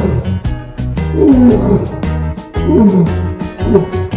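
Asiatic lion roaring in a bout: long roars that fall in pitch, about a second in and again just under three seconds in, then shorter grunting roars near the end, over background music.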